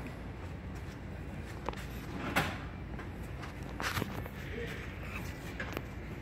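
A few scattered clicks and knocks of a small screwdriver and plastic coil-pack connectors being handled on the engine, the loudest about two and a half seconds in, over a steady low hum.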